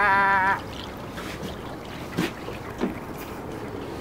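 A man's drawn-out, wavering exclamation in the first half second. Then steady wind and river-water noise with a few faint knocks.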